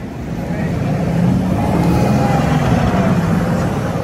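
Road vehicle engine running close by, a low rumble that grows steadily louder as it draws near, with a faint whine rising and falling over it.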